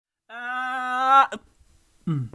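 A single held pitched note, about a second long, that swells and bends slightly upward before cutting off, followed by a short blip.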